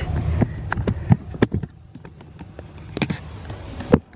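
The handle of a locked glass balcony door being worked: a scattering of sharp clicks and knocks, over a low rumble that fades out about halfway through.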